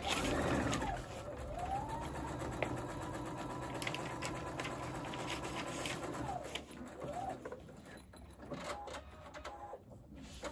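Electric sewing machine stitching a seam through a pieced quilt block: the motor whine speeds up, runs at a steady speed for about four seconds, slows, gives one short burst and stops. Light fabric handling follows near the end.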